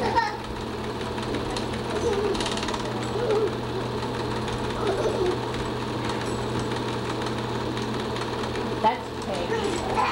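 A film projector running with a steady mechanical clatter and hum, under faint scattered voices talking.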